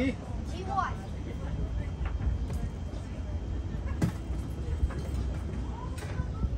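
Outdoor ambience: a steady low rumble, with a brief voice just under a second in and a single sharp click about four seconds in.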